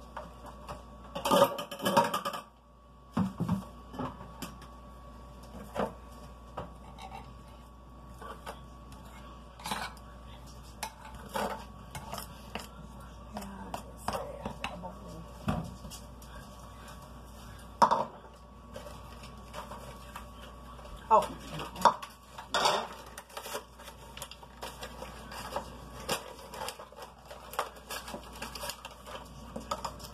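A spatula scraping and knocking against a glass mixing bowl of frosting, with scattered clinks and taps of utensils and small items set down on a countertop. Several louder knocks stand out among the light clatter.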